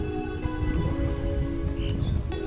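Background music of held notes that change pitch in steps, over a steady low rumble.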